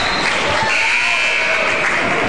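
Gymnasium scoreboard horn sounding once, a steady buzzing tone lasting about a second, over the murmur of the crowd. It is the horn that calls a substitution at the scorer's table.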